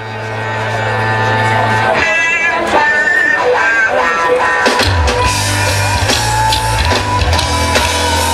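Blues-rock band playing live on an open-air stage, heard from among the crowd, with guitar to the fore. The sound fades in at the start and grows fuller and heavier in the low end about five seconds in, as bass and drums take hold.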